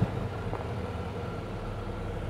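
Engine of a 2023 Mazda CX-5 running steadily at light throttle as the SUV crawls slowly uphill off-road, a low even hum.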